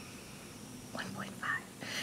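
Quiet room tone, then a woman briefly whispering under her breath about a second in.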